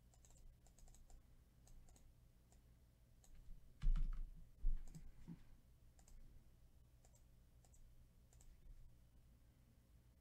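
Computer keyboard keystrokes and mouse clicks, a few scattered taps, with two louder dull thumps about four seconds in.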